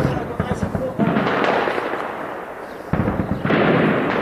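Explosions from shelling mixed with gunfire: sudden blasts at the start, about a second in and near three seconds, each trailing off into a rumble, with a rapid crackle of shots in the first second.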